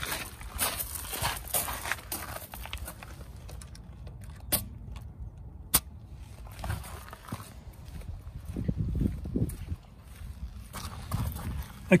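Footsteps crunching on gravel and handling noise, with two sharp clicks a little over a second apart near the middle.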